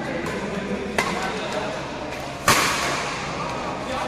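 Badminton rackets hitting the shuttlecock in a doubles rally: a light hit just after the start, a sharp crack about a second in, and a loud hit about halfway through that echoes in the hall.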